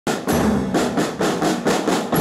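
A school marching band's snare and bass drums playing a steady march beat, about four strokes a second.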